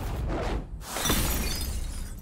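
Two green glass bottles smashed one after the other, about a second apart, each breaking with a sharp shatter of glass.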